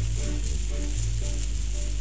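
Instrumental passage of a Spanish song played from a 78 rpm shellac record on a horn gramophone, with steady high surface hiss and crackle over the music and a low hum underneath.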